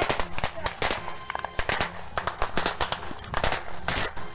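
Small-arms rifle gunfire: many sharp shots at irregular intervals, some coming in quick succession.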